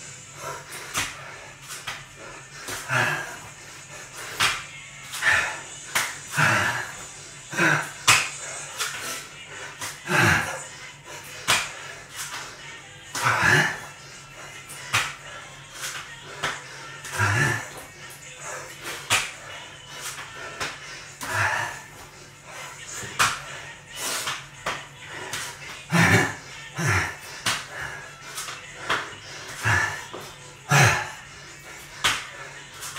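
Repeated slaps of hands and feet landing on a tiled floor during burpees, each landing coming every second or two, with short, heavy grunting exhales from the exerciser.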